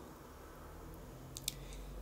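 Quiet room tone with a faint low hum, and two small sharp clicks close together about one and a half seconds in.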